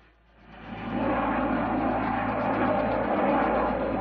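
Jet noise of a Sukhoi T-50 fighter flying overhead. It swells in over the first second and then holds steady.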